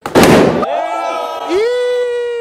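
A loud bang, a burst lasting about half a second. From about one and a half seconds a long pitched note slides up briefly and then holds steady.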